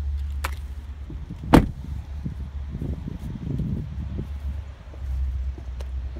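Steady low wind rumble on the microphone, with one sharp knock about a second and a half in, the loudest sound, and a fainter click just before it; rustling handling noise follows as the phone is carried.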